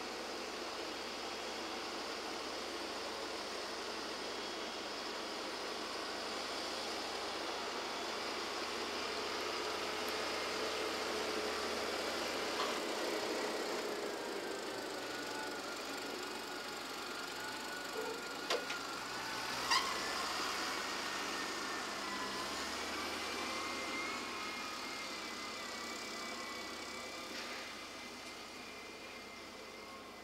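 Diesel engines of a New Holland excavator and a Claas tractor running steadily as they load soil, the engine pitch drifting up and down. A few sharp knocks come near the middle.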